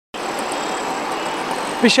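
Steady road-traffic noise from a busy city street, cutting in suddenly just after the start. A man's voice begins near the end.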